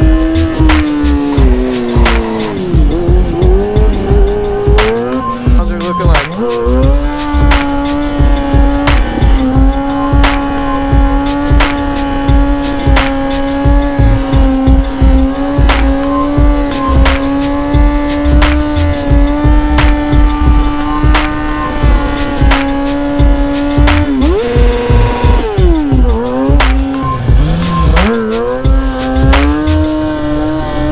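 Kawasaki ZX-6R 636's inline-four engine held at a steady pitch for long stretches, dropping and rising again a few seconds in and again near the end, under background music with a steady beat.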